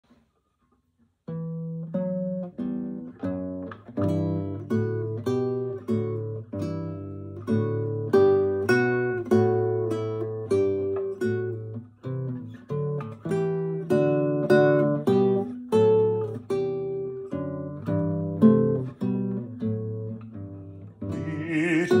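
Fingerpicked acoustic guitar playing a solo introduction. It starts a little over a second in, with plucked notes and chords at about two a second. A singing voice comes in just before the end.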